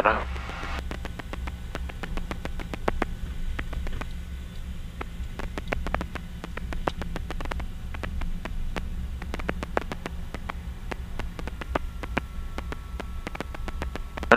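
Piper Navajo's twin piston engines running steadily, heard from inside the cockpit as a low drone, with many sharp, irregular clicks and ticks over it.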